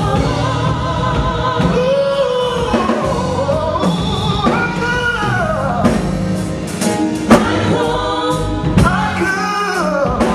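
A man singing a gospel song over instrumental accompaniment with a beat, his voice sliding through long held notes.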